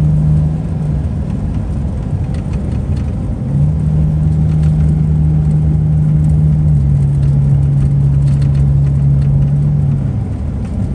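Car driving, heard from inside the cabin: a dense low road and engine rumble with a steady hum. The hum fades about a second in, comes back with a short rise in pitch about three and a half seconds in, and steps slightly lower near seven seconds.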